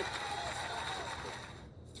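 Bowling-arena crowd cheering and clapping after a strike, dying away over about two seconds, heard through a TV speaker.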